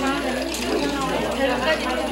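Operators' voices talking at a manual cord telephone switchboard, overlapping one another, mixed with mechanical clicking from the switchboard's keys and plug cords as connections are made.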